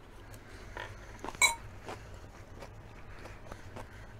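Close-miked chewing of a mouthful of salad, with small clicking mouth sounds. About a second and a half in comes a single sharp, ringing clink of a metal fork against a ceramic bowl, the loudest sound.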